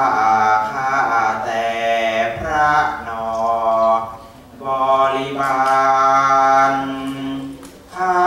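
Thai classical vocal: a singer's voice holding long, drawn-out melismatic notes that bend slowly in pitch, in two phrases with a short break about four seconds in.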